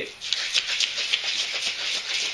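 Gallon glass jug shaken by hand, the whole coffee beans and spirits inside swishing and rattling against the glass in quick repeated strokes.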